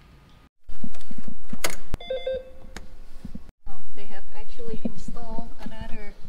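Loud, muffled voices in two stretches, each starting and stopping abruptly, with a short electronic beep about two seconds in.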